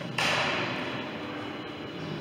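A single sudden thump just after the start, its echo fading over about a second and a half in a large galleried hall.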